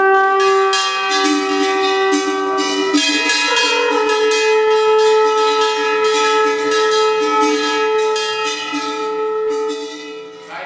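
A group of men holding long, sustained notes in chords without words, the pitch stepping up about three and four seconds in, over a steady metallic ringing and jingling of bells.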